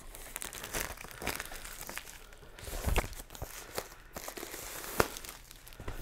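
Clear plastic shrink wrap being torn off a vinyl record box set and crinkled in the hands: irregular crackling with a few sharper snaps, the loudest about three and five seconds in.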